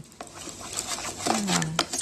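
A metal spoon stirs a thin tomato-paste sauce in a plastic bowl, scraping and clicking against the bowl.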